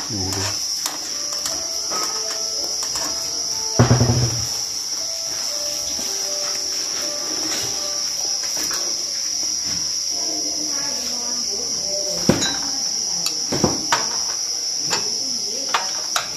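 A chorus of crickets chirring steadily in one high, continuous band, with a few sharp clinks of a spoon on a metal tray in the last few seconds.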